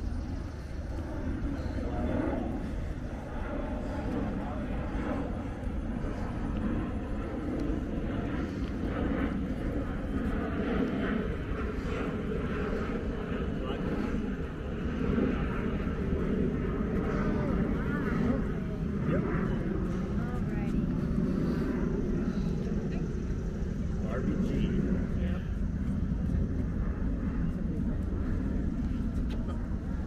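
Indistinct voices of people talking as they walk, too faint to make out, over a steady low rumble.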